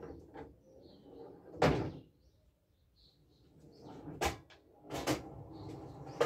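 A few sharp knocks and clacks as a pool cue and balls are handled at the table, the loudest a little under two seconds in, with faint bird chirps between them.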